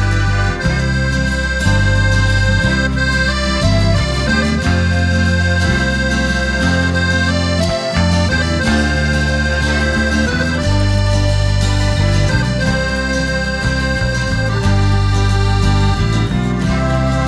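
Instrumental break of a Calabrian folk-pop song: an accordion plays the melody in long held notes over bass and guitars.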